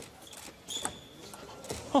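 Table tennis ball clicking off the rackets and the table during a fast rally: a few sharp, separate clicks spread through two seconds.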